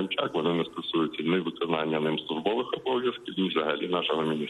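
A man speaking over a telephone line; the voice sounds thin, with the top end cut off.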